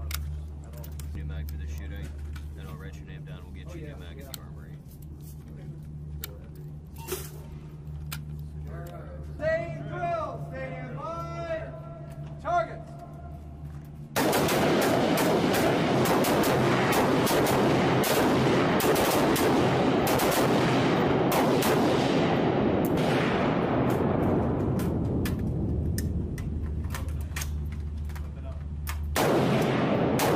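Several 5.56 mm service rifles firing in an enclosed concrete range. The fire starts suddenly about halfway through as many rapid, overlapping shots with heavy echo, and eases off just before the end. Before that there is only a low steady hum, a few clicks and a brief voice.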